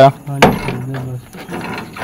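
Pliers and metal parts clicking and rattling inside a washing machine while its tight new drive belt is being worked onto the motor pulley, with one sharp click just under half a second in.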